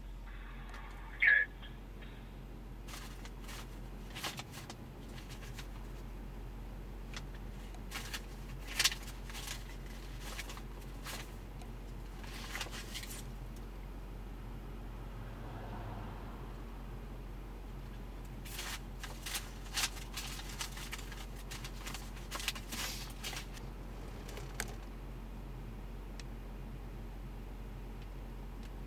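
Steady low hum inside a stopped vehicle's cab, with scattered faint clicks and rustles.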